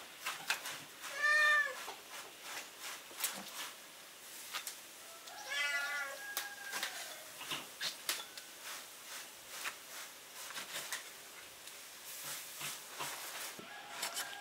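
A cat meows twice, briefly about a second in and again, longer and falling, around six seconds in, over scattered knocks of a cleaver cutting beef tripe on a wooden chopping block.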